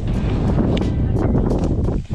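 Wind buffeting the microphone: a heavy, steady low rumble, with a few faint clicks over it.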